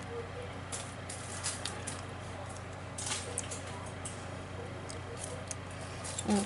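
Faint, scattered scratchy ticks of a metal pokey tool picking adhesive rhinestones off their backing sheet, with a small cluster about three seconds in, over a steady low electrical hum.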